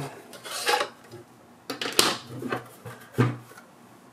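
A plastic drive tray is pulled out of the Synology DS220+'s drive bay and handled: a soft rustle, then a sharp plastic click about two seconds in, followed by a few lighter knocks.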